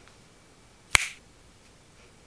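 A single sharp finger snap about a second in.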